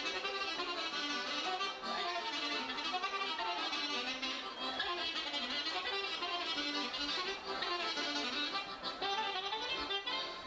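Traditional Romanian folk dance music led by a fiddle playing a continuous, winding melody.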